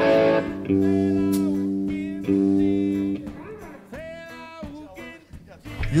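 Guitar music: three sustained chords, each struck and left to ring, then a quieter line of single notes bending in pitch.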